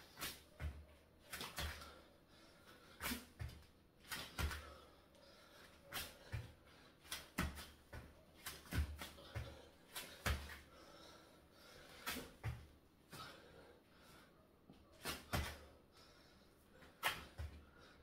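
Hands and bare feet thudding on an exercise mat over a tiled floor during fast repeated burpees: sharp low thumps, often in quick pairs, about one to two a second.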